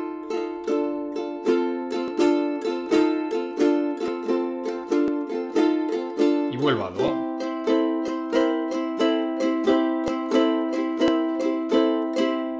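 Ukulele strummed steadily in a blues accompaniment on an F chord, with a fretted note added to make F6 and the seventh to make F7. The chord voicing changes about halfway through.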